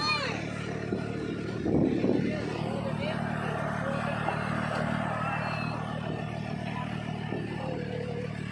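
Farm tractor engine running at a steady hum as it pulls a wooden passenger wagon along an orchard lane.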